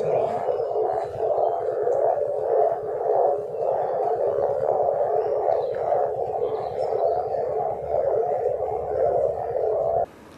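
Unexplained continuous noise said to come from the ground, heard as a steady mid-pitched rushing drone with a slightly wavering texture. Its cause is unknown, and villagers have made differing guesses about it.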